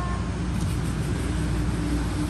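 Low engine rumble of a nearby motor vehicle, with a steady hum coming in about two-thirds of the way through.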